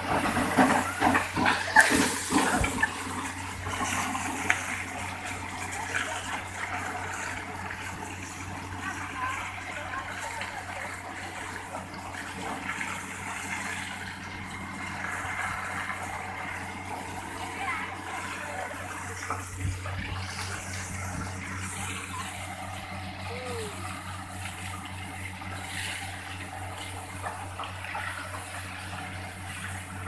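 Borewell drilling rig running, its engine and air compressor droning steadily while compressed air blows water and slurry out of the borehole in a rushing, gushing spray. The spray is loudest and most uneven in the first few seconds.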